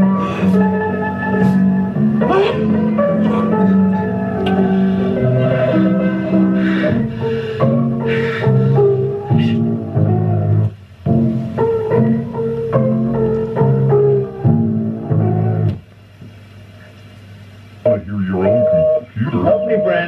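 Electronic keyboard music: a melody of held notes moving over a stepping bass line, which stops about three-quarters of the way through.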